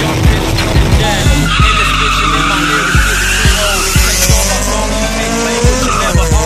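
Street-race car tires squealing for about four seconds as the car launches, with engine noise underneath, over a hip-hop beat.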